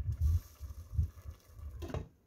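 Glass lid set onto a stainless steel stockpot, landing with a short, sharp clank near the end. Before it come a few dull low knocks from handling the pot and lid.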